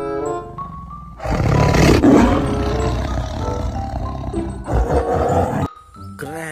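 A tiger roaring: one long roar starting about a second in and loudest near two seconds, then a second, shorter roar near the end, over light background music.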